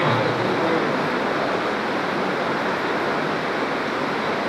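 Steady, even rushing hiss, about as loud as the speech around it, with no words or distinct events.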